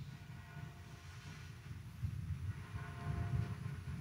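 Faint low background rumble with a few faint steady tones over it.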